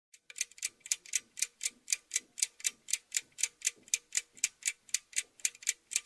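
Clock ticking steadily, about four ticks a second, in an even tick-tock rhythm.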